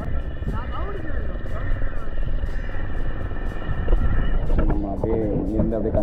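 Steady low rumble of a boat under way on open water. Background music runs over it until about four and a half seconds in, and a man's voice starts near the end.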